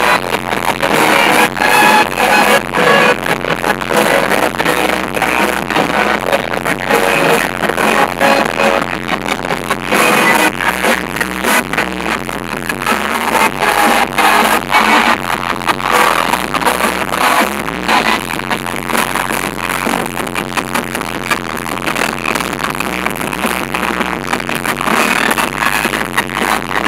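Loud amplified live band music with a steady beat, an electric guitar among the instruments.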